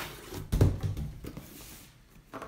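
A cardboard box set down on a table with a dull thump about half a second in, followed by a few lighter knocks and scrapes of hands handling cardboard boxes.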